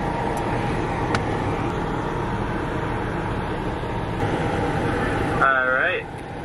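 Steady running noise of a car heard from inside its cabin. A short voice comes in near the end.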